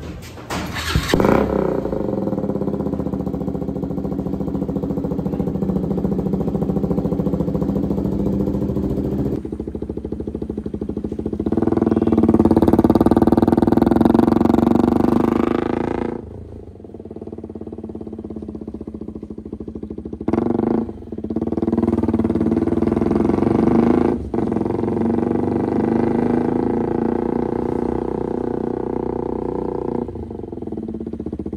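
KTM RC sport bike's single-cylinder engine running through an aftermarket dual-tip exhaust while being ridden, growing louder and higher under throttle for a few seconds midway, then dropping away sharply, with short breaks later on like gear changes.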